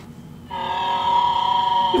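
Film sound effect of a chained, injured baby Tyrannosaurus rex crying out: one long, steady, high-pitched wail that starts about half a second in. It is a distress cry, used as bait to draw the adult T. rex.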